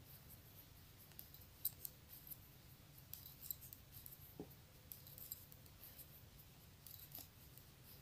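Faint, scattered light clicks and ticks of metal knitting needles working yarn as stitches are purled, over near silence.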